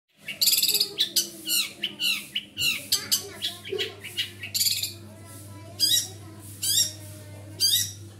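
Caged songbird singing a rapid, high-pitched song: fast trilled phrases mixed with quick downward-slurred whistled notes, several per second, with short gaps between phrases.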